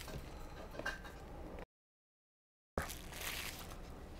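Faint rustling and scraping of a cardboard product box being handled and slid open, broken by about a second of dead silence in the middle where the recording is cut.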